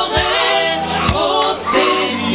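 Gospel worship song led by a group of singers on microphones, with band accompaniment and a steady beat.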